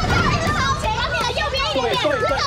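Several people shouting directions over one another in excited, overlapping voices, with water splashing as someone wades through a swimming pool.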